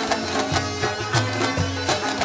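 Afghan Badakhshi folk music played without singing: quick plucked string notes over recurring low drum strokes.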